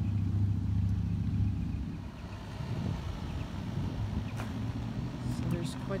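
A motor vehicle's engine running nearby, a low steady hum that fades away about two seconds in. A few faint clicks follow near the end.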